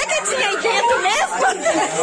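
A crowd of children talking and shouting over one another, many voices at once.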